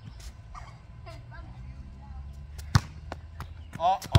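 A basketball striking hard once, a single sharp smack about three quarters of the way through, over a low steady background rumble.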